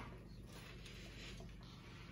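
Quiet room tone with faint soft rustling as small paper slips are dropped into the cups of a muffin pan.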